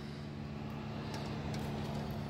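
Steady low machine hum, like an engine or motor running in the background, with no change through the moment.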